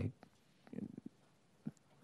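A pause in a man's speech at a microphone: faint room tone with a few soft clicks and a brief low murmur.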